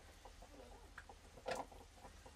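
A chicken clucking once, briefly, about one and a half seconds in, over faint small clicks.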